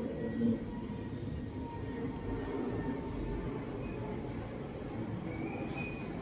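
Steady low rumbling background noise with a faint steady high whine; a short rising tone sounds near the end.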